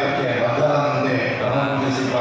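A male voice chanting mantras with long, held notes at a fairly even pitch.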